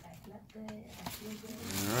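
A low murmuring voice, then a brown paper gift bag and its tissue paper rustling as the bag is handled near the end.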